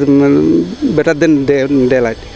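A man's voice speaking: an interviewee answering, in a low, drawn-out tone.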